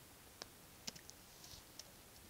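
Near silence: quiet room tone with about four faint, short clicks spread across two seconds, the loudest a little under a second in.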